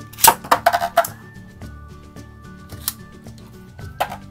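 Two Beyblade Burst tops, Winning Valkyrie and Alter Chronos, launched from ripcord launchers into a plastic stadium. A quick clatter of the cords ripping and the tops landing and clashing fills the first second. The tops then spin, with one sharp clash near three seconds in.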